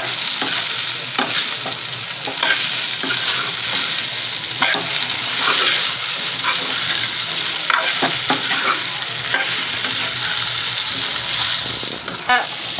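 Sago pearls with peanuts and potato sizzling steadily in hot oil in a frying pan, as a metal spoon stirs them, scraping and knocking against the pan at irregular moments: sabudana khichdi cooking.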